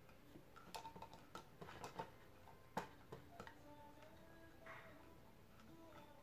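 Faint, irregular clicks of a hand screwdriver turning a drawer-handle screw into a wooden drawer front as it is tightened, one click sharper about three seconds in.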